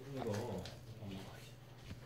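Faint whimpering: a few short, soft cries, each falling in pitch.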